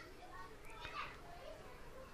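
Faint, indistinct voices in the background, higher-pitched than the narrator's, heard under low room noise.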